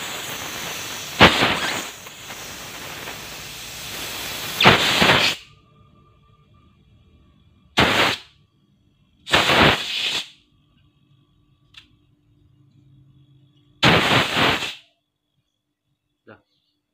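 Pressurized gas hissing out of a freezer box's refrigeration pipe: a continuous hiss for about five seconds with two louder spurts, then three short blasts a few seconds apart as the pipe end is opened and closed by hand. A faint steady hum runs between the blasts.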